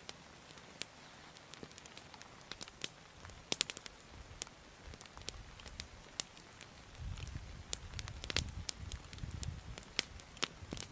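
Small campfire of branches crackling, with sharp irregular pops. A low rumble joins in about seven seconds in.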